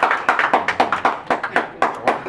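Several people clapping by hand in a dense, uneven run of claps.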